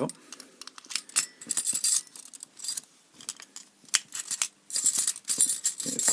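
A bunch of metal keys on a ring jangling and clinking against a lever padlock as keys are handled at its keyhole, in two spells of clinking, about a second in and again through the second half.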